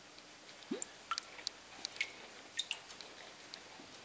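Faint liquid sounds from a clay beaker dipped in a bucket of iron slip: a single short rising bloop about three-quarters of a second in, then scattered small drips and splashes.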